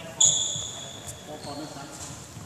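Badminton racket striking a shuttlecock: a sharp hit just after the start with the strings ringing in a high ping that fades over about a second, then a fainter, higher ping from a second hit about a second and a half in.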